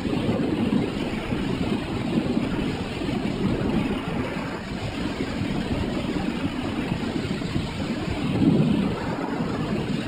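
Freefall wind in a tandem skydive, rushing and buffeting over the camera's microphone as a loud, steady rush that swells briefly near the end.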